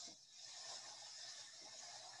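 Near silence with a faint, steady high hiss: the soundtrack of a waterfall video clip playing through a video call.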